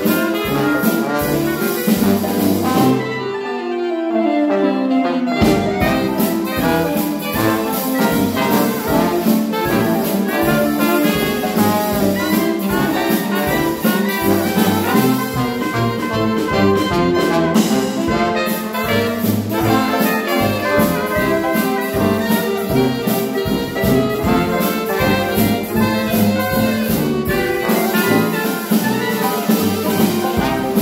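Dixieland jazz band playing live: trombone, trumpet, clarinet and saxophone over banjo and drum kit. About three seconds in the drums and low end drop out for a couple of seconds while a single line falls in pitch, then the full band comes back in.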